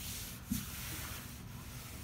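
Steady rubbing on a wooden tabletop as it is wiped clean, with a short knock about half a second in.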